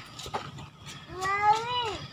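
A young child's voice calling out one long, drawn-out word, "neuf" (French for nine), starting about a second in, its pitch rising and then falling away at the end.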